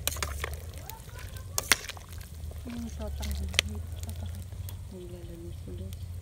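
Metal ladle stirring cabbage in broth in a large stainless-steel pot: liquid sloshing, with a few sharp clinks of metal against the pot, over a steady low rumble.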